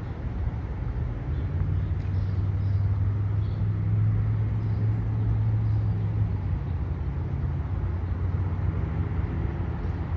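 A motor vehicle engine running, a steady low hum that grows louder about a second and a half in and eases off after about six seconds, over general street noise.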